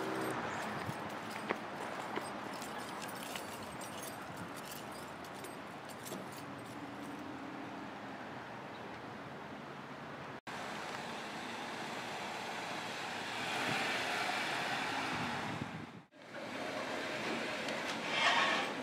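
Steady car and traffic noise, cutting out abruptly twice and swelling louder for a couple of seconds shortly before the end.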